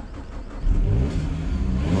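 A 2012 Peugeot 207's engine turning over briefly, then catching about two-thirds of a second in, rising in revs and running on.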